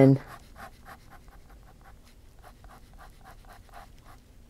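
Fine-tip ink pen scratching on sketchbook paper in a quick run of short hatching strokes, several a second.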